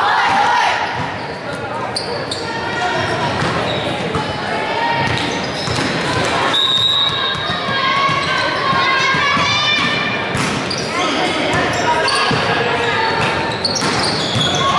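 Many voices of players and spectators talking and calling out at once, echoing in a large gymnasium, with volleyballs bouncing on the hardwood floor now and then.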